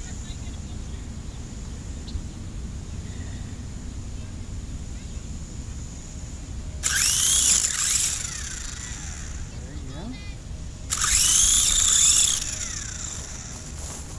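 A toy RC helicopter's small electric rotor motors whine up in two short bursts, each rising in pitch and falling away, the second a little longer. The helicopter stays on the grass and does not lift off.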